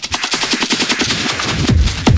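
Hard techno (schranz) in a DJ mix: the kick drum drops out and a rapid roll of sharp percussive hits plays, like machine-gun fire. The heavy kick comes back about a second and a half in.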